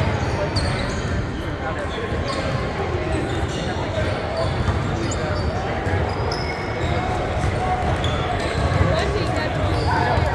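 Basketball bouncing on a hardwood gym floor, with short high squeaks and indistinct voices in the gym.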